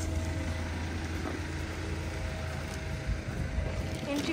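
An engine running steadily: a low, even hum under a background hiss.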